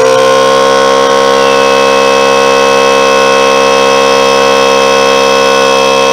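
Harbor Freight Central Pneumatic 3-gallon oil-free hot dog air compressor running on power from a 410-watt inverter: a loud, steady motor-and-pump drone with a strong buzzing whine. It settles to a fixed pitch after spinning up at the start, showing that the inverter can run the compressor.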